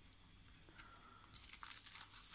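Near silence, then faint crinkling from about halfway in as a clear plastic stamp sheet is picked up and handled.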